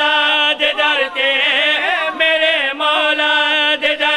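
Male voices chanting a melodic religious recitation through a microphone and loudspeakers. The voice bends through long held notes above a steady lower held note, with only brief breaks.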